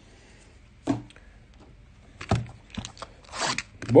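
A cardboard trading-card blaster box being handled and torn open: a short knock about a second in, then scraping and tearing over the last two seconds.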